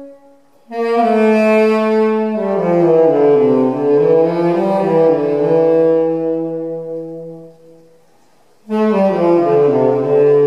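Saxophone playing a slow jazz line in its low register: a phrase of held notes stepping downward, with their tails overlapping in the echo. The phrase fades out about three-quarters of the way through, and a new phrase begins near the end.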